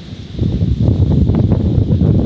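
Strong gusting wind buffeting the microphone: a loud, uneven low rumble that grows stronger about half a second in.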